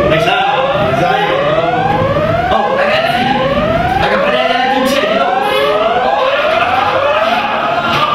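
Building evacuation alarm sounding a fast repeating whoop: rising sweeps, about one and a half a second, stopping shortly before the end. It signals the start of an evacuation drill.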